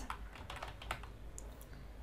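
Faint typing on a computer keyboard: a scatter of irregular key clicks.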